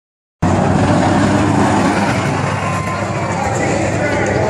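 Car engine running steadily and loudly, the sound cutting in suddenly about half a second in.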